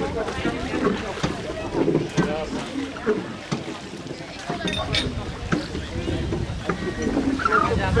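People talking quietly, with wind rumbling on the microphone and a few brief clicks.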